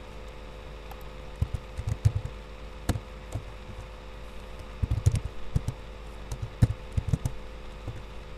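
Computer keyboard keystrokes in irregular bursts of clicks over a steady low electrical hum, as an equation is typed in.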